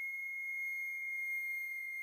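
A single steady high-pitched tone, pure and unwavering like an electronic whine, from a horror film's sound design.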